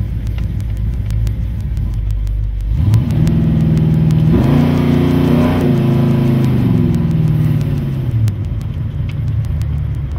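Oldsmobile 455 big-block V8, breathing through long-tube headers and a 3-inch exhaust, rumbling at low speed from inside the car. About three seconds in it accelerates with a rising, louder note, holds for a couple of seconds, then eases off with the pitch falling.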